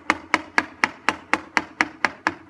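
Wooden mallet striking a chisel into a block of wood in quick, even knocks, about four a second.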